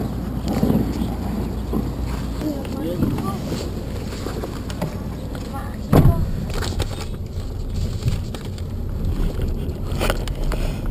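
Wind rumbling on the microphone, with a single loud thump about six seconds in as a car door shuts.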